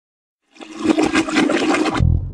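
Toilet flushing: a rushing, gurgling water noise that swells up about half a second in and is cut off abruptly as the song's bass line begins.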